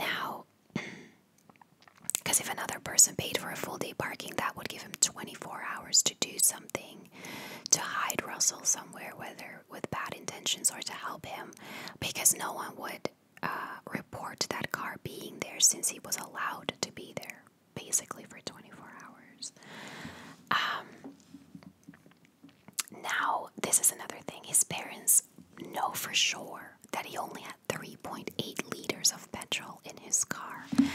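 A woman whispering close to the microphone, her speech broken by small, sharp mouth clicks.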